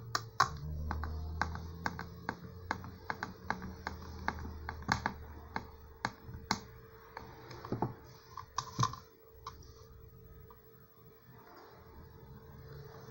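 Hand screwdriver twisting a screw into the end of a PVC coil tube, making a quick run of sharp clicks, about two to three a second, that stops about nine and a half seconds in, followed by quieter handling of the tube and board.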